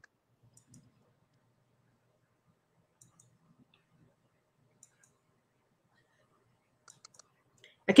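Near silence on a video-call line, broken by a few faint, scattered clicks, with speech starting right at the end.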